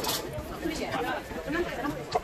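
Indistinct voices chattering in a busy street market, several people talking at once with no single clear speaker.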